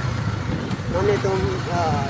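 Motorcycle engine running as the bike is ridden, a steady low drone under a man talking.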